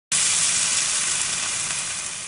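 A steady hiss that starts suddenly and slowly fades.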